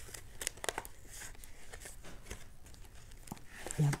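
Clear plastic packaging of a stamp set and craft papers crinkling and rustling as they are handled and pushed back into an envelope pocket, with scattered light crackles and taps.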